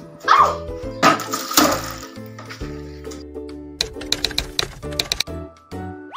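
Background music of steady held notes, with a run of quick light ticks in its second half. Two short loud bursts sound over it in the first two seconds.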